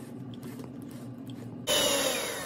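Metal spoon stirring dry flour in a ceramic bowl, a soft steady scraping. About 1.7 s in, an electric hand mixer comes in much louder, its beaters whirring steadily through the beaten egg and sugar mixture.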